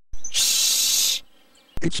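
Cartoon steam hiss sound effect: one loud burst of hissing a little over a second long, the gag for steam blowing out of an angry character's ears. A synthesized voice starts speaking near the end.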